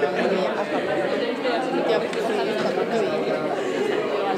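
Crowd chatter: many people talking at once, their overlapping voices forming a steady babble as a standing crowd mingles in a room.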